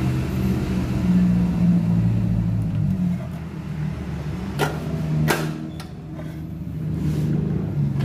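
A steady low motor hum whose pitch drifts slightly, with two sharp clicks a little past halfway.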